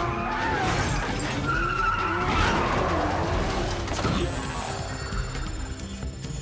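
Street-racing cars' engines revving and tyres squealing, with film score music underneath. A sharp knock about four seconds in, after which the car sounds fade and the music is left.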